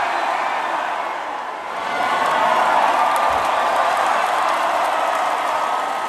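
Large concert crowd cheering, easing slightly about a second and a half in, then swelling again.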